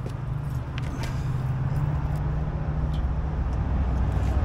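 A vehicle engine idling with a steady low hum that grows a little louder, with a few light clicks as a trailer wiring plug is handled.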